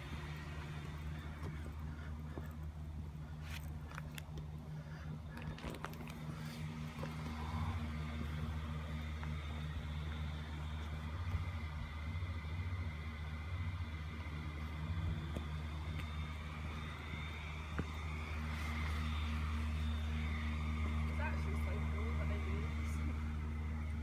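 A steady low mechanical hum, with faint voices of people talking in the background.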